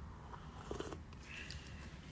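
A faint low rumble with a few soft clicks and small mouth sounds as someone sips from a cup.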